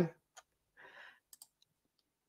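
A few faint computer mouse clicks in near quiet, with a soft breath about a second in.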